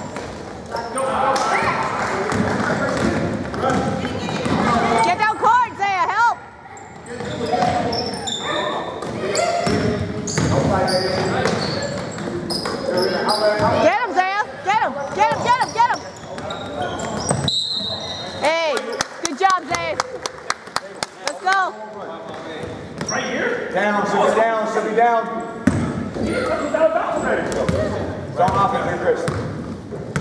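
A basketball dribbled and bouncing on a hardwood gym floor during a youth game, under continual shouting from players and spectators, all echoing in a large hall.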